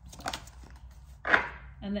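Oracle cards being handled on a tabletop: a few light clicks as a card is drawn from the deck, then one sharp slap about halfway through as the card is laid down.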